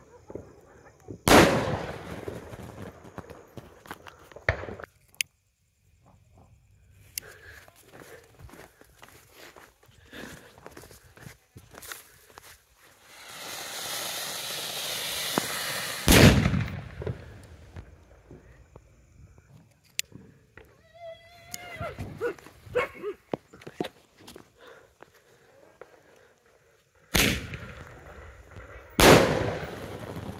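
Diwali fireworks: sharp bangs of sky-shot shells bursting about a second in and twice near the end, with fainter crackling after them. In the middle, an anar fountain firework hisses and grows louder for a few seconds, then a loud bang follows.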